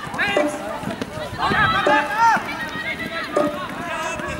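Jugger players shouting and calling to one another during play, over a regular timekeeping beat about every second and a half that counts the game's stones.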